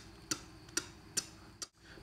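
Flute lip pizzicato: a string of short, dry pops at an even pace of about two a second. This is the technique that the player takes 'slap tongue' on flute to be a mislabeling of.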